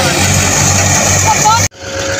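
Steady engine hum of a tractor-driven wheat thresher running, with voices over it. It breaks off sharply near the end at a cut, and a different steady machine noise follows.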